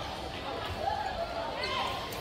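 Faint ambience of a large sports hall: a steady hum with distant voices of players and onlookers, and no clear racket strikes.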